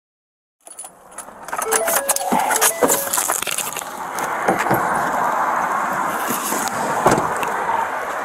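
Clinking and rattling of metal gear, like keys or equipment jangling against a moving body-worn camera, over a steady street-traffic rush. The audio cuts in suddenly just under a second in.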